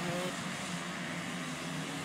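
Motocross motorcycle engines running, heard as a steady blended drone.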